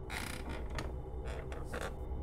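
Padded office chair creaking as someone leans back in it: a creak of about half a second at the start and a shorter one near the end.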